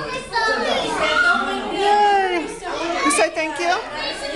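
Several children talking and calling out over one another in excited, high-pitched voices, with a brief shrill squeal about three seconds in.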